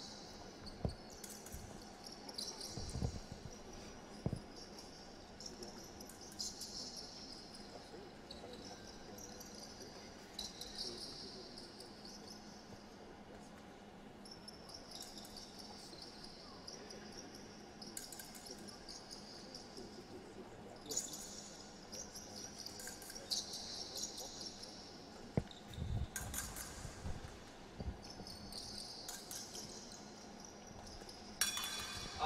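Fencing shoes squeaking on a metal piste as épée fencers step, advance and retreat: many short high squeaks that rise and fall, with a few dull thumps of feet landing.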